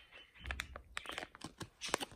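Plastic toy packaging crinkling and crackling in quick, irregular small clicks as it is handled, with a soft low thump about half a second in.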